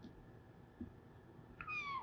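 Whiteboard marker writing on a whiteboard, faint, ending in a short squeak that falls in pitch near the end.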